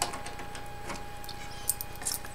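Low background hum with a thin steady tone, and a few faint light clicks in the second half from handling the handheld radio and its USB charging cable.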